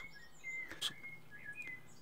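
Quiet room tone with a few faint, short high-pitched chirps and one light click a little before halfway.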